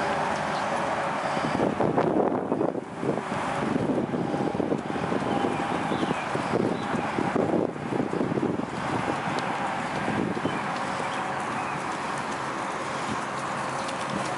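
Wind buffeting the microphone, with the soft, irregular hoofbeats of a Thoroughbred gelding trotting under a rider on grass, most distinct in the middle of the stretch.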